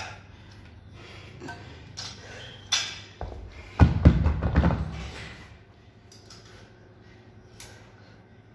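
A weightlifter's heavy breathing, with a few sharp knocks of the loaded barbell and plates against the rubber gym floor. About four seconds in comes a louder run of low thumps, the loudest sound here.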